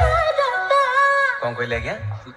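A DJ remix played loud through a large sound system: a high sung vocal line wavers in pitch, and the heavy bass beat drops out just after the start.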